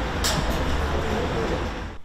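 Outdoor street noise: a steady low rumble under an even hiss, with a brief sharper noise about a quarter of a second in.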